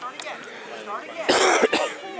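Faint voices in the background, with one loud, rough burst close to the microphone about halfway through, lasting about half a second.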